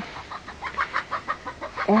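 Hens clucking: a run of short clucks, several a second.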